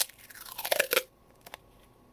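Duct tape being pulled off its roll and torn, a crackling tear lasting about a second, then a single short click.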